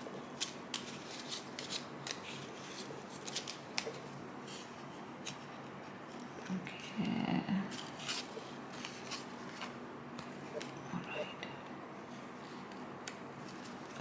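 Small white paper cards being shuffled by hand: soft, irregular paper ticks and rustles. A brief low vocal murmur comes about seven seconds in.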